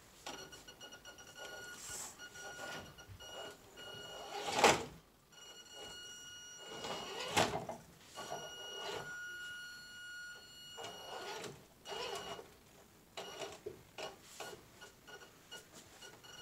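Axial SCX10 II RC rock crawler creeping over stone: a high, steady whine from its electric drive comes and goes in stretches as it moves. Knocks and clunks of tyres and chassis on rock come throughout, the loudest about four and a half and seven and a half seconds in.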